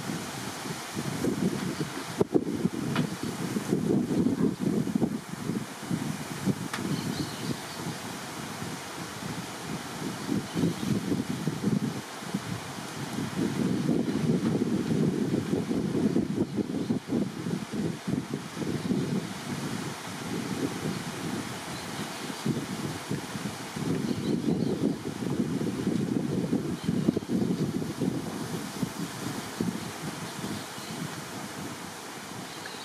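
Wind buffeting the microphone in gusts, a low rumble that swells and eases several times, with one sharp click about two seconds in.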